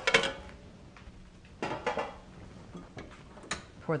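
A metal ladle knocking and scraping in a metal saucepan of béchamel sauce: a few scrapes and sharp separate clinks.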